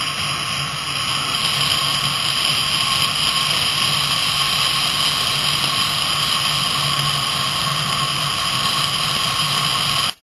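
Steady rush of wind and wheel roar on asphalt aboard an engineless gravity soapbox racer coasting downhill at speed. It gets a little louder about a second and a half in and cuts off abruptly at the end.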